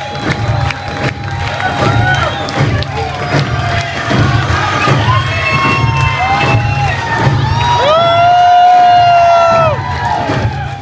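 Concert audience cheering and clapping, with shouts and whoops. A long held shout near the end is the loudest sound.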